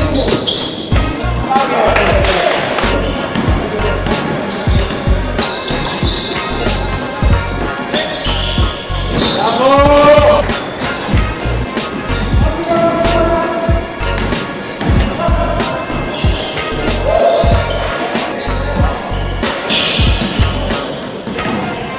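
A basketball bouncing repeatedly on a wooden gym floor during play in a large sports hall, with players' voices calling out.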